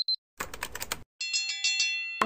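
A typing sound effect, a quick run of about six keyboard-like clicks, then a bright chime of several quick bell-like notes just after a second in.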